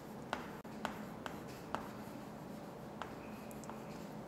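Chalk writing on a chalkboard: faint scratching with about six light, irregular taps as the letters are formed.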